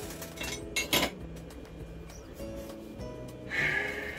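Light clinks of small objects knocked and moved on a workbench, the loudest about a second in, over steady background music.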